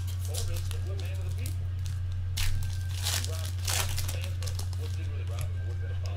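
Trading card pack wrapper being crinkled and torn open by hand in a few brief rustling bursts, a little over two seconds in and again around three seconds in, over a steady low hum and faint background talk.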